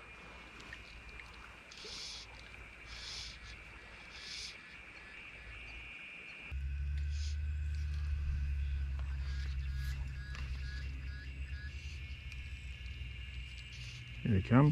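Quiet outdoor riverside ambience with a steady faint high-pitched drone. About halfway through, a louder low rumble starts suddenly and continues.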